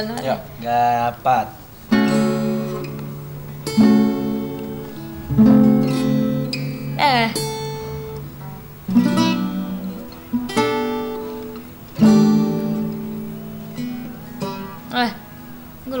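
Acoustic guitar strummed slowly, a single chord about every one and a half to two seconds, each left to ring and fade before the next.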